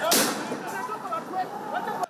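A police tear-gas launcher fires once at the start, a single sharp bang with a short tail, over the voices of a crowd.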